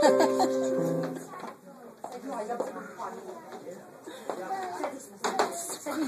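Keyboard music playing held chords, which stops about a second and a half in. Then a roomful of small children's voices chattering, with a couple of sharp knocks near the end.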